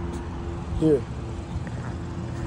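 Car engine idling with a steady low hum, and a single short spoken word.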